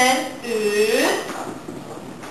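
Wordless vocalizing: a person's voice sliding down and then up in pitch in drawn-out sounds rather than words.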